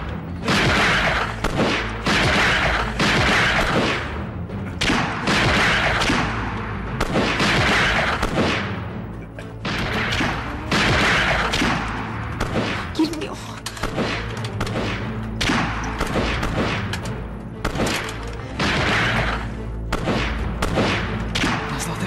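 A rifle gunfight: many shots, some in quick succession and some spaced out, over a steady low music score.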